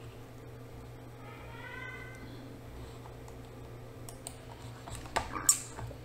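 Faint computer keyboard and mouse clicks over a steady low hum, with a few louder clicks near the end.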